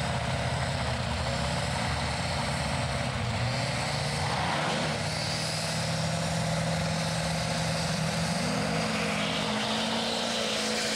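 Diesel pickup truck engine held at high revs on the drag-strip start line, building boost against the brakes while belching black smoke: a loud, steady drone that rises in pitch near the end as it launches.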